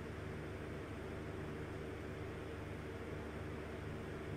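Steady low hum with an even hiss of background noise, unchanging and with no distinct events.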